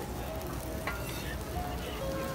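Cabbage-and-batter okonomiyaki pancakes sizzling on a flat-top griddle, with a metal spatula clicking against the griddle about a second in.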